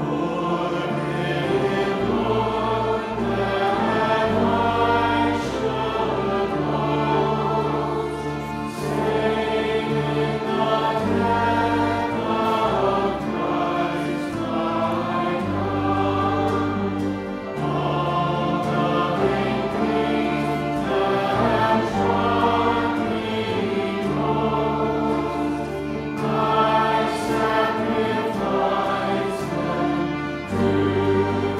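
A congregation singing a hymn together with keyboard accompaniment and sustained bass notes, the many voices blending into one continuous chorus.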